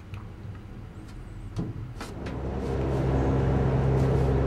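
Gondola lift machinery: a couple of sharp clacks, then from about halfway a steady low mechanical hum that grows louder as the cabin runs into the lift station.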